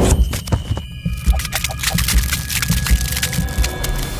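Electronic outro sound design for an animated end card: deep, irregular bass pulses under many sharp glitchy clicks, with a couple of steady high tones held through the middle.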